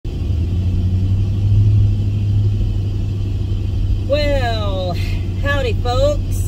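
Steady low rumble of a motor vehicle heard from inside its cab, its engine running. A person's voice makes brief drawn-out wordless sounds from about four seconds in.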